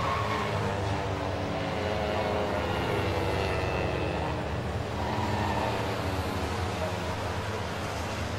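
Citroen 2CV race cars' small air-cooled flat-twin engines running on the circuit, a steady drone with faint higher tones drifting in and out and no sharp pass-by.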